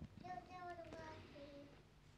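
A faint, high-pitched child's voice in the background in sing-song held notes, with a soft click at the start.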